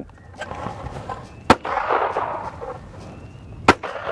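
Two shotgun shots about two seconds apart, one fired at each clay of a simultaneous pair.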